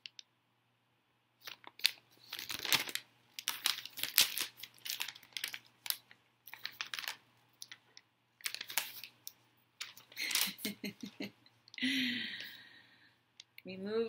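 A large folded paper instruction leaflet rustling and crinkling as it is handled and folded, in a long run of short, sharp crackles. Near the end comes a brief murmur of a woman's voice.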